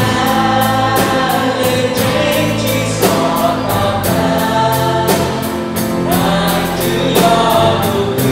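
Live worship band playing a gospel song: a male lead voice and many voices singing along over electric and acoustic guitar, bass and drum kit, with a steady cymbal beat.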